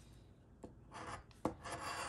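A coin scratching the coating off a paper scratch-off lottery ticket: faint at first, then a run of scratching strokes in the second half, with one sharp click about halfway through.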